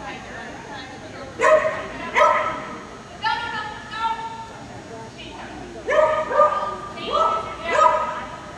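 A dog barking in sharp, high yips: a pair in the first half, a few longer, drawn-out calls in the middle, then four in quick succession near the end.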